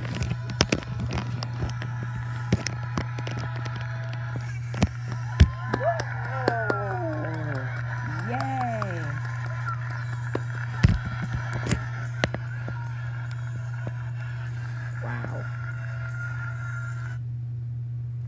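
Music and voices from a recorded stage show playing through laptop speakers, over a steady low hum, with scattered clicks and knocks from hands touching and handling the laptop. The playback cuts off suddenly near the end.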